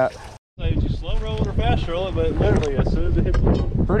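Voices talking, not made out as words, over steady wind noise buffeting the microphone; the sound drops out completely for a moment about half a second in.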